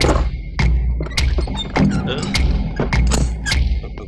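Film background score with heavy percussion hits about every 0.6 seconds over a deep, pulsing bass.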